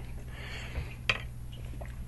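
Small airsoft parts handled on a wooden table: a soft rustle, then a single light click about a second in, over a steady low electrical hum.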